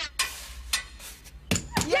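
A handful of sharp, separate knocks, about four, unevenly spaced; a voice says "yes" right at the end.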